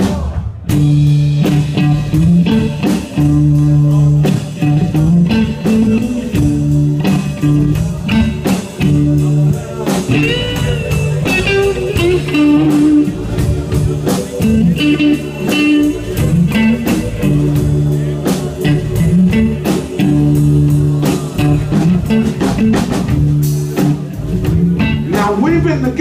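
Live blues band playing the instrumental intro of a love song: an electric guitar (a Stratocaster-style guitar) plays bending lead lines over held keyboard chords, bass and a steady drum beat.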